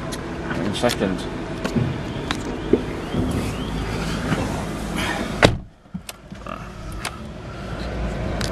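A person getting into a Kia Rio's driver's seat: rustling and small clicks of handling, then the door shut with a thump about five and a half seconds in. After it the outside sound is suddenly muffled.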